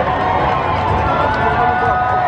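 Crowd at a street parade: many voices talking and calling out at once over a constant low rumble.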